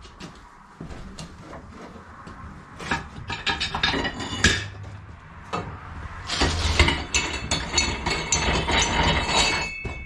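Tire and wheel being handled on a manual tire changer's steel post: scattered knocks and clanks, then a longer run of metallic clattering and ringing clinks in the second half.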